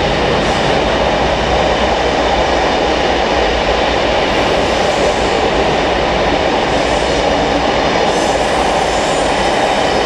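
Electric multiple-unit train standing at the platform with its equipment running: a steady, loud noise that doesn't change.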